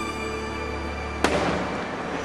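A fireworks display: a sharp firework bang a little over a second in, ringing out afterwards, over a held orchestral chord from the show's music as it fades.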